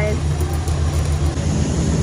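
Steady low mechanical hum of dairy milking-parlour machinery, growing more uneven about a second and a half in.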